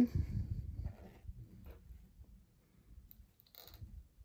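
Faint handling noises from a plastic action figure and its flexible whip accessory as the whip is fitted into the figure's hand: soft knocks in the first second, then a few faint clicks and rustles.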